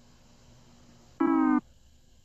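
A single short tone from the cartoon's soundtrack, about a second in: held at one pitch with a buzzy stack of overtones, under half a second long, cutting off abruptly. A faint low hum runs beneath.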